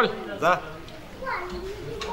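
Speech only: a few short spoken words from a fairly high-pitched voice, with a brief pause in the middle.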